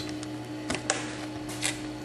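A few light clicks and taps as a magnetic encoder readhead is handled and set against its mounting bracket, over a steady low hum.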